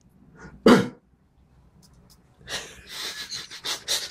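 A man making non-verbal mouth sound effects close to a studio microphone: one short, loud, sharp burst of breath about a second in, then after a pause a run of rapid, hissing, breathy bursts.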